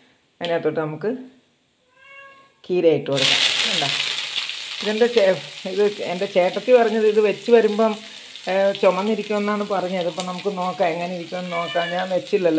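Chopped amaranth leaves (cheera) hit hot oil in a frying pan and sizzle, a loud steady hiss starting suddenly about three seconds in. Repeated short vocal sounds, a voice or cat-like calls, go on over the sizzling.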